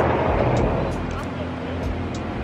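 A car engine idling with a low steady hum, under background chatter from people nearby and a few light clicks.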